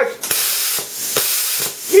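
Pilot arc plasma cutter torch on a Cut 40 plasma cutter fired in open air: a steady high hiss of air and pilot arc starting about a quarter second in, with a few sharp clicks and a brief dip near the middle. The pilot arc is lighting through a modified earth lead on a machine built without pilot arc, showing the conversion works.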